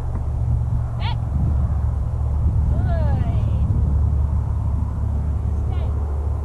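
Wind buffeting the microphone as a steady low rumble, with a few brief high calls over it: one about a second in, a falling call with a quick high trill around three seconds, and another near the end.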